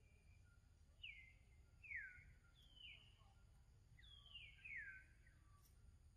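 Faint bird calls: five short whistles that fall in pitch, three spaced about a second apart, then two close together near the end.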